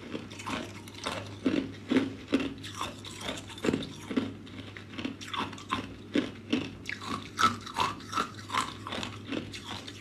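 A person chewing and crunching clear ice cubes: a rapid, irregular series of crisp crunches, a couple each second.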